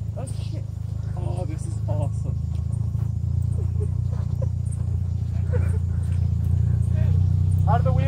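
Engine of a half-cut car (the front half of a car driven on its own) running steadily as it creeps along: a low drone that grows slightly louder toward the end.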